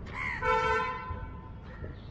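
Vehicle horn honking: a short note, then one steady honk lasting under a second.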